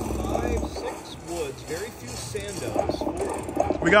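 Video slot machine playing its electronic game sounds as reel symbols transform into houses, starting with a low rumble in the first second. Casino background chatter runs underneath.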